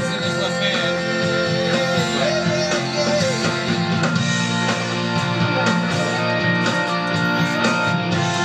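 A full-band rock song playing steadily, with guitar prominent.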